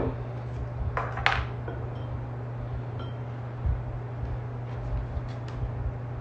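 Two sharp clinks or knocks of bar tools and glassware about a second in, then a few faint knife taps on a cutting board near the end as an orange wheel is cut for a garnish, over a steady low hum.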